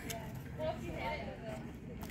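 Faint talk from people in the background over quiet outdoor ambience; no distinct other sound.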